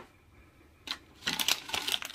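Handling noise: a single click, then near quiet, then from about a second in a quick run of clicks and rustles as objects are handled.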